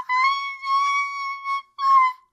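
A woman's voice holding a high, steady sung note for about a second and a half, then a shorter second note near the end.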